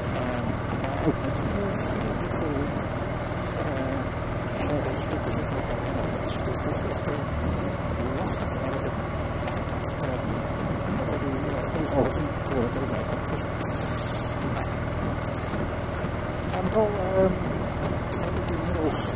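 Honda ST1300 Pan European's V4 engine running steadily at low town speed, with road and wind noise, heard from the rider's position.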